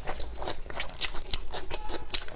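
A person chewing crunchy food close to a clip-on microphone: a quick, irregular run of small crunches.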